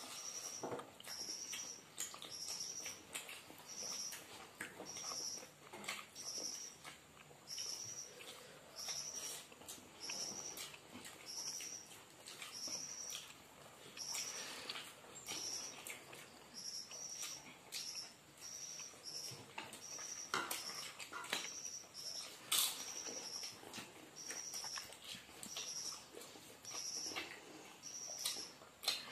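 Close-up eating sounds of hands mixing rice and curry, with chewing and lip smacks as scattered soft clicks. Over it, a short high-pitched chirp repeats steadily about once a second.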